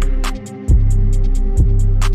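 Background music: a beat with deep bass, a regular kick drum and quick hi-hat ticks, the bass dropping out briefly about half a second in.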